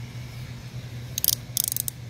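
Yellow snap-off utility knife's blade slider being ratcheted: a couple of sharp clicks about a second in, then a quick, even run of clicks as the blade is moved out.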